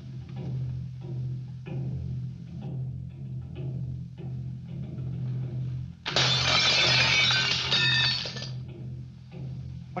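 Film score music with a steady pulsing beat, then about six seconds in a mirror shatters: a loud crash of breaking glass lasting about two seconds.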